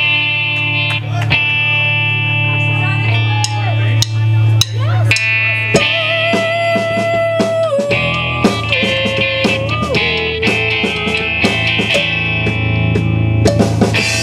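Electric guitar played through an amplifier with a drum kit, a rock song without bass: held, ringing guitar notes with some sliding notes, over drum and cymbal hits.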